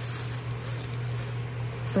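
A steady low hum under faint, even room noise, with no distinct sounds standing out.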